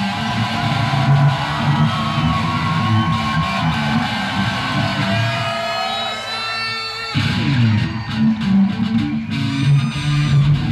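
Band music led by electric guitar over bass guitar, playing continuously. The low end drops out for about a second near the seventh second, then the full band comes back in.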